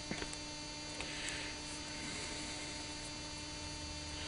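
Steady electrical hum with a few faint small metallic clicks near the start and about a second in, from a small screwdriver turning a screw into a welder collet shoe.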